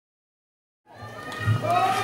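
Complete silence for almost a second, then a crowd of spectators shouting and cheering fades in and grows louder.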